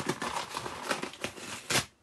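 Shipping packing paper being handled, crinkling and rustling in quick irregular crackles, with one louder crackle near the end.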